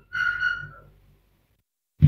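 A short, steady high whistle-like tone lasting well under a second, then the sound cuts out abruptly to silence.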